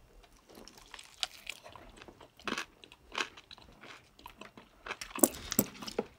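A person chewing and biting into a spicy chicken wing, heard close up: scattered wet clicks and small crunches from the mouth, coming more thickly near the end.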